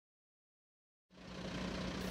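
Silence for about the first second, then the faint steady hum of an idling engine fades in, carrying one low steady tone.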